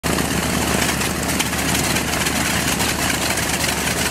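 The radial engines of a B-25 Mitchell bomber running at idle on the ground, shortly after start-up: a loud, steady, rapidly pulsing roar.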